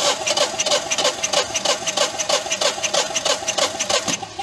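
Generac standby generator's two-cylinder engine cranking over on its starter motor without firing, an even chug about five times a second, during a compression test with a gauge in one spark plug hole and the fuel shut off. The cranking stops right at the end; the gauge reads about 195 to 200 psi, close to the expected 210.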